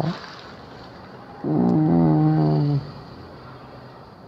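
A woman's voice holding one long, low note for just over a second, starting about a second and a half in, with a soft breath at the start.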